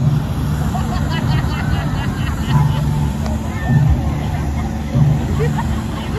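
Hot-air balloon burners firing with a heavy low rumble that swells and eases, under the chatter of a crowd of spectators.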